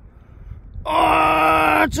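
A man's long, drawn-out 'oooh' of excitement, held at one steady pitch for about a second, starting about a second in and breaking into speech near the end. It greets the coin he has just dug up.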